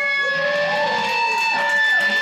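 Electric guitar feedback and sustained notes ringing out at the end of a rock song: a steady high feedback tone held under several notes that slide up and then back down in pitch, with the drums stopped.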